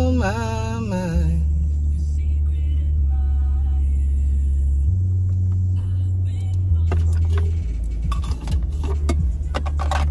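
Car radio playing a bass-heavy R&B song: a deep bass line stepping between notes, a voice singing briefly at the start, and sharp percussion hits in the second half.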